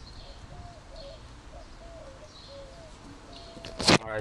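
Faint outdoor background with a bird calling softly in short, repeated notes, then one loud knock near the end.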